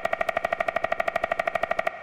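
Synthesized woodpecker pecking from the Xfer Serum soft synth: a fast, even rattle of pitched clicks, more than ten a second. The rhythm comes from a very fast LFO sweeping the wavetable and Serum's reverb filter.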